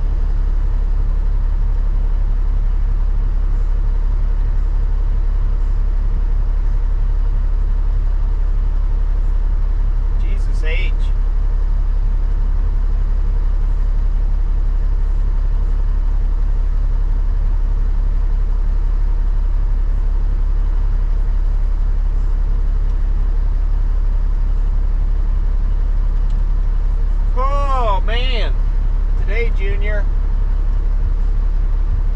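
Cabover semi truck's diesel engine idling steadily, heard from inside the cab.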